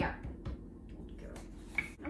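Wooden rolling pin working dough on a wooden board: a few light knocks and clicks, the sharpest near the end.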